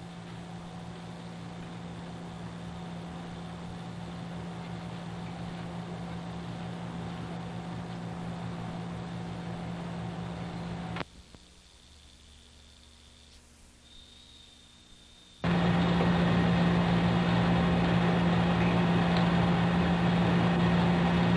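Steady electrical hum with hiss on an old videotape soundtrack. It drops away abruptly about eleven seconds in and returns louder some four seconds later.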